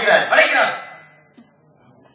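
Crickets chirping steadily, high and pulsing. A man's voice comes through the stage microphone over them for the first second or so.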